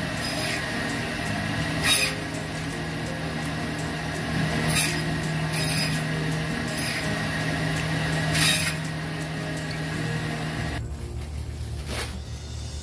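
Electric meat bandsaw running with a steady motor hum, broken by about six short, louder rasps as the blade cuts through raw chicken pieces. The machine sound stops shortly before the end.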